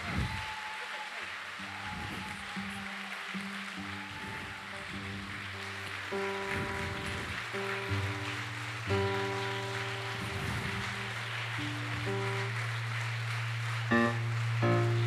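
Jazz band quietly tuning up on stage: soft, short plucked notes repeated with gaps, then from about six seconds in a low held tone with a few higher notes over it.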